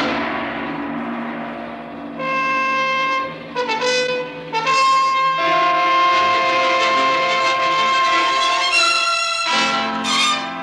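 Dramatic orchestral theme music led by brass. A loud chord opens it and dies away over about two seconds, then trumpets and trombones hold long chords that change every few seconds.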